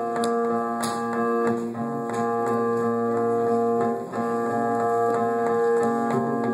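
A live band playing an instrumental passage with no vocals: held electric keyboard chords over plucked bass and guitar notes. The chords change about every two seconds.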